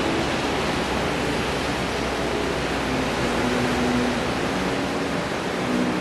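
A steady, even rushing hiss that runs unchanged with no breaks: a constant background noise bed.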